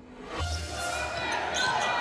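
Broadcast intro sting for the highlights graphics: a deep bass hit about half a second in, with a whoosh swelling over it and building in level into the arena sound of the game.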